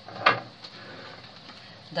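A full glass jar of jam set down on a marble countertop: one short knock about a quarter second in, followed by a faint tap.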